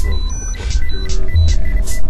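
Dense underground electronic music with a loud rumbling bass under irregular noisy percussion hits, about five in two seconds, and short high electronic beeps.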